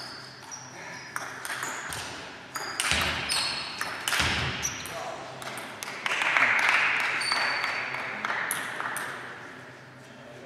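Table tennis ball clicking off bats, the table and the hall floor, a quick series of sharp clicks each with a short high ping. In the second half a louder wash of crowd noise rises and fades.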